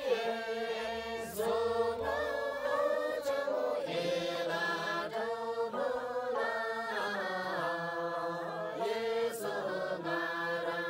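A mixed group of men and women singing a chant-like song together in unison, in phrases a second or two long.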